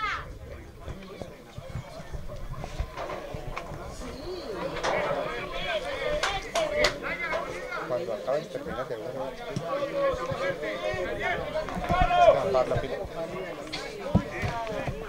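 Overlapping voices of spectators and players talking and calling out, growing louder from about five seconds in, with a few sharp knocks among them.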